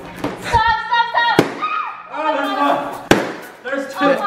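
Two balloons popping with sharp bangs about a second and a half apart, amid high squeals and shouting.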